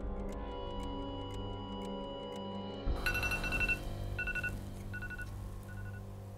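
Music with a steady ticking, then about three seconds in a high two-pitch electronic beep starts and repeats in short bursts.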